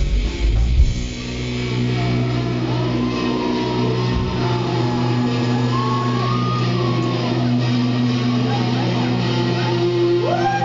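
Live rock band with electric guitars and bass. The full band plays loudly until about a second in, then the sound settles into a sustained, droning chord with high sliding notes over it.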